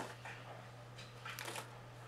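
Faint rustling and handling noises, with a short click at the start, over a steady low electrical hum.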